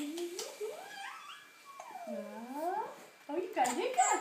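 A baby's wordless vocalizing: several drawn-out calls that glide up and down in pitch.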